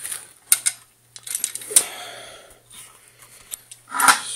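Handling noise: a few sharp clicks and knocks with some rustling in between, over a low steady hum.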